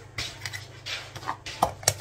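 Kitchen utensils clinking and tapping against cookware: a handful of short light knocks spread over two seconds, the sharpest two near the end.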